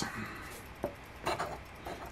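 A coin scraping the coating off a scratch-off lottery ticket: a light tap, then a brief bout of scratching.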